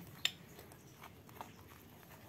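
A plastic spoon stirring flour-and-egg batter in a ceramic bowl: one sharp click against the bowl about a quarter second in, then a few faint ticks.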